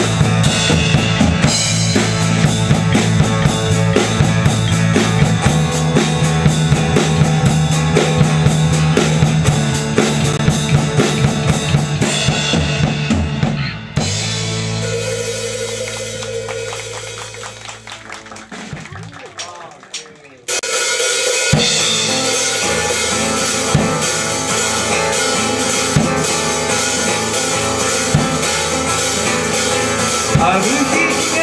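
Live band of acoustic guitar, electric bass and drum kit playing, with the drums prominent. About 14 seconds in, the band stops on a held chord that rings and fades for around six seconds, then the full band comes back in suddenly.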